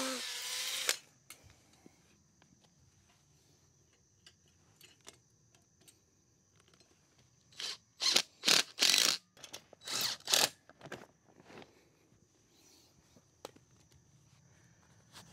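Cordless hammer drill boring into a concrete block, stopping within the first second. Then a cordless DeWalt impact driver drives a Tapcon concrete screw through a steel pipe strap into the block, in a series of short bursts between about seven and a half and ten and a half seconds in.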